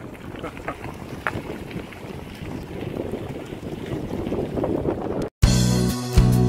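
Wind rushing over the microphone and bicycle tyres rolling on a gravel track while riding, growing gradually louder. About five seconds in it cuts off abruptly and music starts, with a strong bass line.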